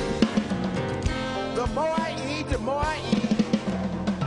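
Live blues band playing an instrumental passage between vocal lines: electric bass guitar and drum kit keeping a steady groove, with a lead line sliding up and down in pitch in the middle.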